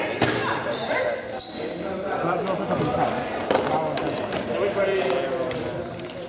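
Sports shoes squeaking in several short, high squeals and feet thudding on a sports hall floor as players run, with players' voices calling in the background.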